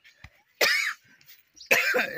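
Two short, harsh coughs about a second apart, the second running straight into a voice.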